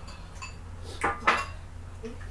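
Metal forks clinking against white ceramic bowls during eating: a few light taps, then two sharp clinks a quarter-second apart about a second in.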